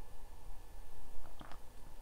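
Low, uneven rumble of a room heater running, with a couple of faint clicks a little past the middle.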